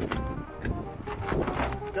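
Indistinct voices talking, with music playing underneath.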